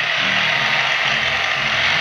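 Small blue-bladed wind turbine generator spinning fast in a strong stream of air: a steady whirring hiss that cuts off suddenly at the end.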